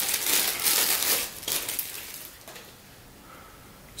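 A thin clear plastic bag crinkling as a USB cable is handled and pulled out of it. The crinkling is strongest in the first second and a half, then dies down.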